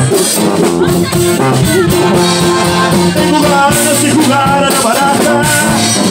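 Live norteño conjunto music: a button accordion plays the melody over tuba bass notes and the strummed rhythm of a bajo sexto.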